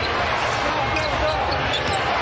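Live basketball game sound in a large arena: steady crowd noise, with sneakers squeaking on the hardwood court and a ball being dribbled.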